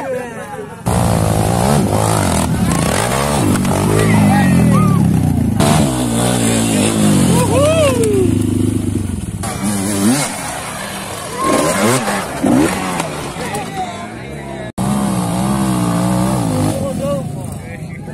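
Dirt-bike engines revving hard and unevenly, the pitch rising and falling as they are throttled up a steep dirt climb, with people shouting over them. The sound changes abruptly twice.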